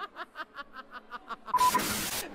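A woman laughing in quick, fading ha-ha pulses, about six a second. About a second and a half in, it is cut off by a burst of TV static hiss with a short beep, an edit transition over a colour-bar test card.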